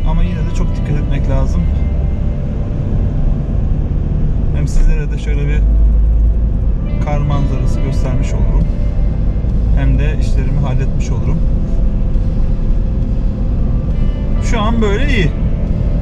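A car driving, heard from inside the cabin as a steady low rumble of engine and tyre noise. Music plays over it, with a voice in short phrases every few seconds.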